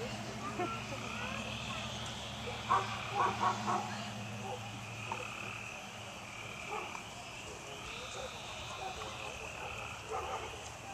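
A steady evening chorus of frogs calling, with a low hum underneath that stops about six seconds in. About three seconds in, a quick run of four louder short sounds stands out.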